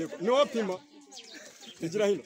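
A person's voice: a short spoken phrase about half a second in, then a quieter stretch of a second or so before talking resumes at the end.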